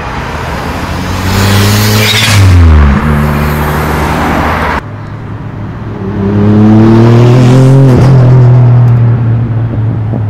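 Two modified Japanese cars accelerating away one after the other, each engine's pitch rising as it revs and then falling at a gear change. First a small silver Toyota Starlet hatchback, then, after a cut about five seconds in, a lowered white Toyota Chaser saloon whose engine holds steady after its shift.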